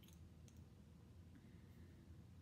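Near silence with two faint clicks, one at the start and one about half a second in, from a small plastic makeup tube and its cap being handled.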